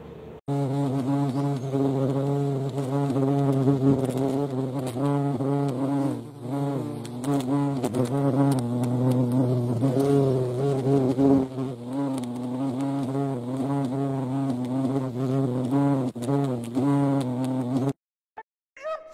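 European hornets' wings buzzing loudly, the pitch wavering up and down as they fly about.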